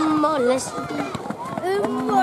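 Several voices shouting and calling out over one another, some calls drawn out for a moment, as from the sideline and the pitch of a children's football match.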